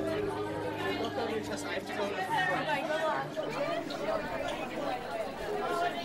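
Indistinct chatter of many voices talking over one another, like a busy school hallway, with no single voice standing out.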